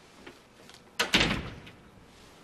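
Cellophane wrapping on a fruit basket and paper crinkling in one short rustling burst about a second in, as a white envelope is pulled out from among the fruit.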